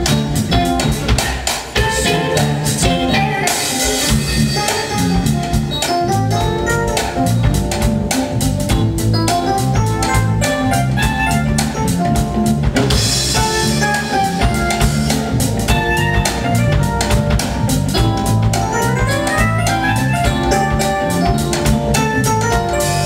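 Live smooth jazz band playing with no words sung: drum kit keeping a steady beat under bass and keyboards, with a rising run of notes near the end.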